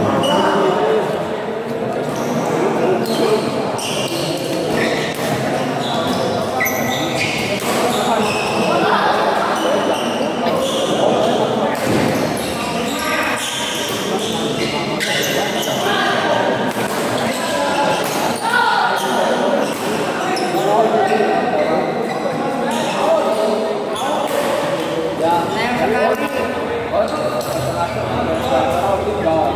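Badminton rally in a large echoing hall: shuttlecock hit back and forth with rackets and players' feet striking the court, with people's voices calling out over it.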